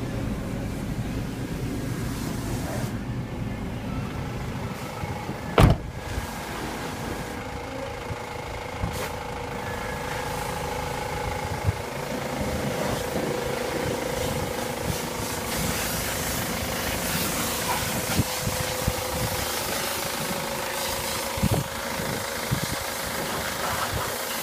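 Ford Transit van's engine idling steadily. A single loud thump comes about five and a half seconds in, with a few lighter clicks later.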